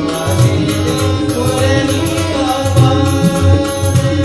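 Live bhajan music: tabla strokes keeping the rhythm under a sustained harmonium melody.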